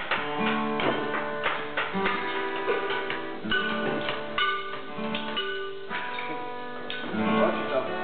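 Guitar playing a run of plucked notes and chords.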